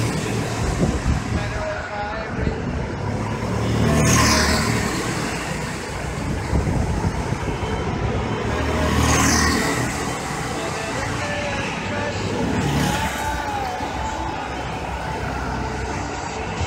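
Go-kart engines buzzing as karts lap the track, swelling and falling away in pitch as karts pass close by about three times, heard echoing in a large covered hall.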